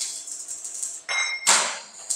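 Steel sheet of a concrete-mixer drum being struck, a few sharp metallic clangs that each leave a high ringing tone, the loudest about a second and a half in.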